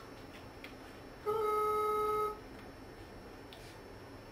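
A single steady electronic beep, one tone with overtones, lasting about a second, heard above a low room hiss.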